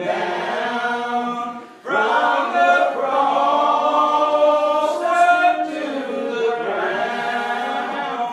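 Unaccompanied hymn singing in the slow, drawn-out Old Regular Baptist style: several voices hold long notes together. The singing breaks off briefly about two seconds in, then carries on.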